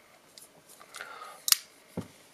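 Liner-lock folding knife being opened: a few faint clicks and scrapes as the blade swings out, then a sharp click about one and a half seconds in as the blade snaps open and the liner locks it.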